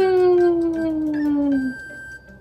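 A person's long drawn-out hum of agreement, 'uuun', rising quickly in pitch and then sliding slowly down until it fades out nearly two seconds in.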